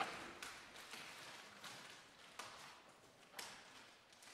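Faint footsteps and small knocks of people moving about a large chamber, roughly one a second, with a louder knock right at the start.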